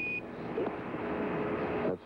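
A short, steady Quindar beep marking the end of a Mission Control air-to-ground radio transmission, followed by radio hiss from the open loop that cuts off suddenly near the end.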